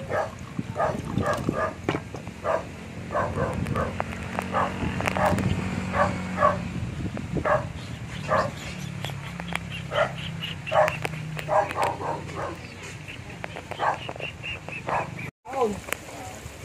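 A dog barking over and over in short barks, about one or two a second, over a low steady background.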